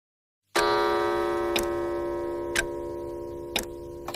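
A single bell-like chime strikes about half a second in and rings on, slowly fading, while a clock ticks about once a second.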